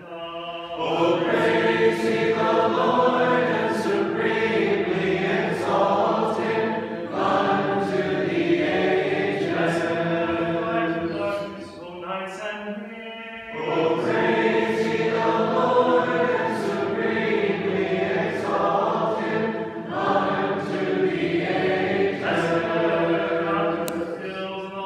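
Orthodox church choir singing a liturgical hymn in two long phrases, with a short lull about halfway through.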